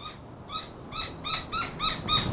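A bird calling a rapid, even series of short high notes, about five a second.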